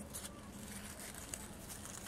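Faint rustling of cantaloupe vines and leaves being handled, with a few light ticks, as a hand reaches in among them to grip a melon.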